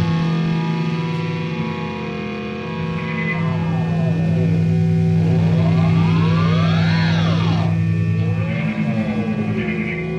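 Experimental rock band playing a sustained electric drone: steady low held tones under a cluster of sliding pitches that sweep up in an arc, peak about seven seconds in and fall back, with a smaller wobble near nine seconds.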